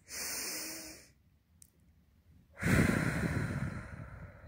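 A woman breathing deeply through a seated yoga arm-raise: a breath in the first second, then a longer, louder breath from about two and a half seconds in.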